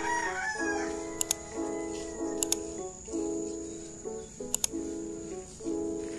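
Background music with repeated chords and a steady beat. A rooster crows once over it, at the start.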